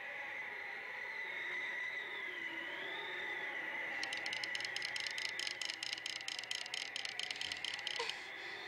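Soundtrack score without narration: a held high tone with a wavering, whistle-like line above it, then from about four seconds in a quick, even ticking, about seven strokes a second.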